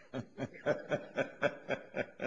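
A person chuckling: a steady run of short laughs, about four a second.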